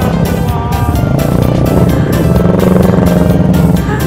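Motorcycle engine running at low revs among a group of motorcycles, with background music playing over it.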